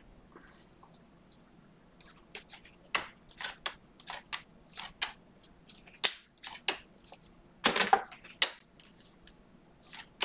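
A stack of 2021 Panini Mosaic football cards being flipped through by hand, each card making a sharp click or short swish as it slides off the one beneath. The clicks start about two seconds in and come irregularly, with a longer, louder scraping rustle shortly before the eight-second mark.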